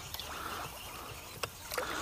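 Quiet open-air background on a small boat, with a few short light clicks in the second half.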